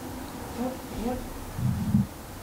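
A person murmuring wordlessly into a nearby microphone: a few short, soft gliding hums, then a louder, lower hum near the end.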